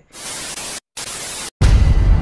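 TV static sound effect: two bursts of hissing white noise, each cut off abruptly into silence. About a second and a half in, loud music with deep bass starts.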